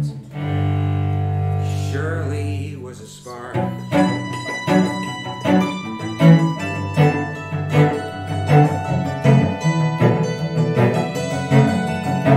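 Acoustic instrumental music: long held low notes for about three seconds, then a hammered dulcimer's strings struck in a quick, steady run of ringing notes.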